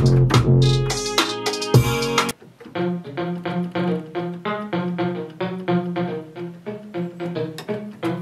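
An afro trap beat with drums and deep bass plays and cuts off abruptly about two seconds in. Then an electric guitar sound plays alone in the beat software: a steady run of short plucked notes over a held low note.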